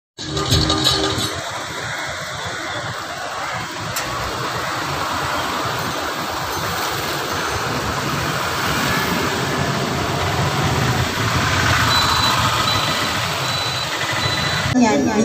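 Steady outdoor street noise with traffic, an even hiss that grows a little louder in the second half.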